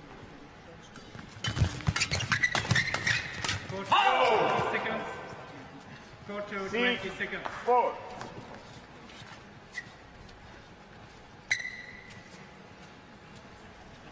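Badminton rally: a quick run of racket strikes on the shuttlecock and squeaks of shoes on the court mat, busiest in the first few seconds. A louder, drawn-out squeaking burst follows about four seconds in and another near seven seconds. A single sharp tap comes near the end.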